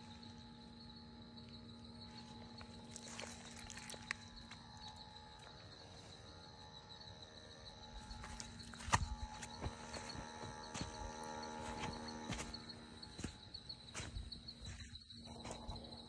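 Night insects trilling steadily at a high pitch, with crunching and rustling in dry leaf litter and scattered handling knocks, busier from about halfway through.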